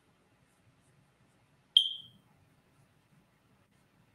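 A smoke detector gives a single short, high-pitched chirp about two seconds in, which dies away quickly. It is the low-battery warning chirp: its owner thinks the detector needs a new battery.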